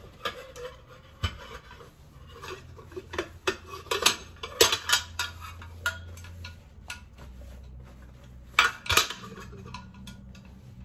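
Paper towel rubbing and crinkling against a plastic tube bird feeder as it is wiped dry by hand, with scattered clicks and knocks of its plastic parts, the loudest about four to five seconds in and again about nine seconds in.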